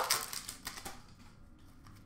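A few faint clicks and rustles of trading cards being handled by hand, card sliding on card, in a small room.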